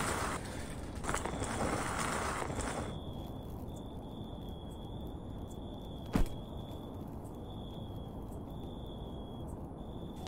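A plastic garbage bag rustling as it is handled for about three seconds, then a single sharp knock from the wheeled trash bin about six seconds in.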